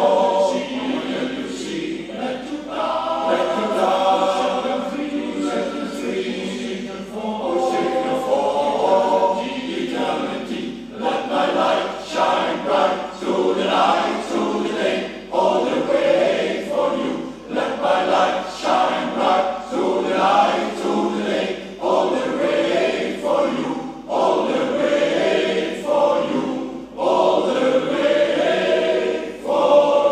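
Male voice choir singing in several parts, with a concert wind band accompanying.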